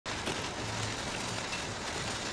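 Steady city street background noise, an even wash of distant traffic.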